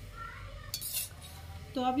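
Cutlery clinking on dishes, one brief clatter about a second in.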